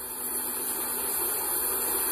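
Steady hiss of background noise with a faint low hum underneath, rising slightly in level.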